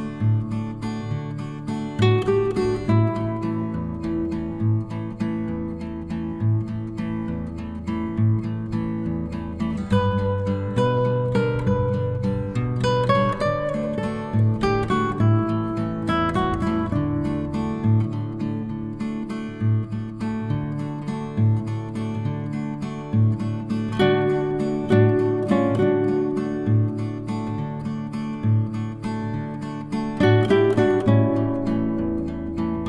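Background music: acoustic guitar strummed and plucked at a steady pace.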